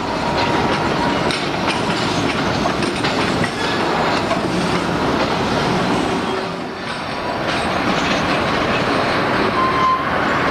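Freight train rolling through a rail yard: a steady rolling rumble with wheels clicking over rail joints and switches, and a thin wheel squeal at the start and again near the end.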